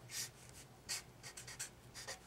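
Felt-tip marker writing on paper: several short, faint strokes.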